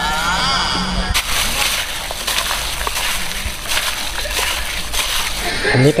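Rice being rinsed in water in a camping cook pot, the water sloshing and splashing in irregular bursts from about a second in.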